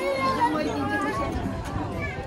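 Voices talking: a mix of people's chatter, with no single clear speaker.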